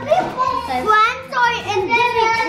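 A young girl's high-pitched voice making drawn-out, sing-song sounds.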